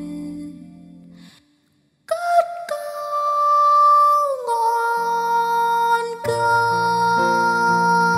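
A song's accompaniment fades out to a brief silence. A female voice then enters with a long held high note that slides down to a lower note. Backing music returns about four seconds later under the sustained note.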